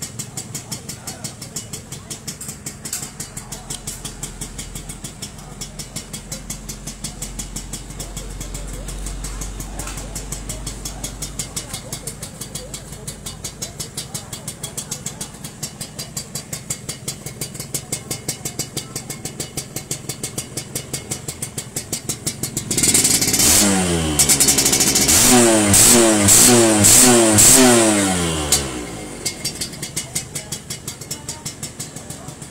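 Suzuki Sport 120's two-stroke single-cylinder engine idling with a steady pulsing exhaust note. Near the end it is revved in four or five quick throttle blips, then drops back to idle.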